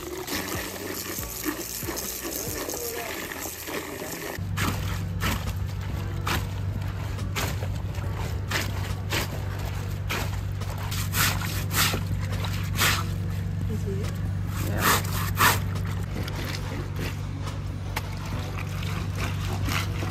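Water poured from a jug into a bucket, then clothes sloshed and splashed by hand in a plastic basin of water during hand laundry. A steady low hum comes in about four seconds in and continues under the splashing.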